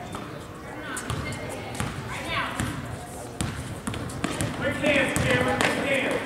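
A basketball bouncing on a hardwood gym floor, with indistinct voices of players and spectators. Several sharp short sounds, some chirping, come during play, getting busier and louder toward the end.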